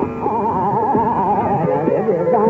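Hindustani classical tarana: a fast, quavering melodic run over steadier sustained accompanying tones.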